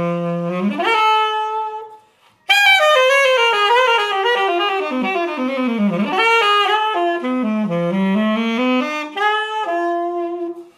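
1957 Buffet Super Dynaction alto saxophone played solo: quick runs sweeping down to the low notes and back up, with a few held notes. A short pause for breath comes about two seconds in.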